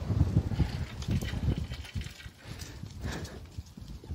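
Low, irregular rumbling noise on a handheld camera's microphone while walking, loudest in the first two seconds, with a few faint clicks.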